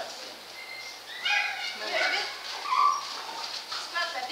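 A small dog whining and yipping in several short, high-pitched calls, with people's voices around it.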